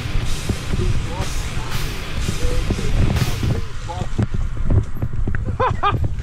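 Mountain bike descending a wet, muddy, rooty trail heard from a helmet camera: wind rushing over the microphone and the bike knocking and rattling over roots and ruts, with short shouts from the rider, the clearest near the end.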